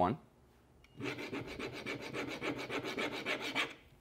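A coin scraped rapidly back and forth across the surface of a laminate flooring sample in a scratch test, about eight strokes a second. It starts about a second in and stops shortly before the end.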